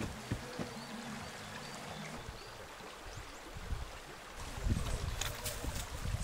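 A small forest stream flowing steadily, a soft even rush of water. From about four and a half seconds in, low rumbling thuds rise over it.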